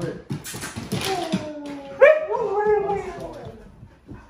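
Huskies whining and yowling: a falling whine about a second in, then a louder, wavering howl-like call about two seconds in that rises and falls in pitch, over some rustling.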